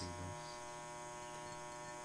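Faint, steady electrical mains hum with a thin buzz of many overtones above it, the recording's background noise. A voice finishes a word at the very start.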